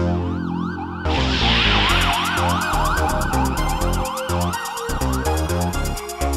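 Spacesynth electronic dance music with a siren-like wail sweeping up and down about twice a second over a pulsing synth bass. A fast, even hi-hat pattern comes in about two seconds in, and the wail stops near the end.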